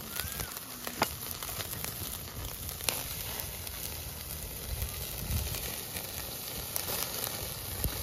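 Meat sizzling on a wire grill over a charcoal fire: a steady hiss with scattered crackling pops.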